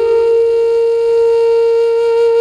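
Background music: a wind instrument holding one long, steady note.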